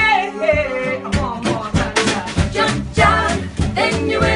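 A live band playing with singing. A voice holds a wavering note at the start, then about a second in the band comes in with quick, regular rhythmic strokes under the voices.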